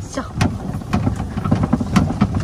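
Open safari cart driving over rough grass, with steady running noise and a few sharp knocks and rattles.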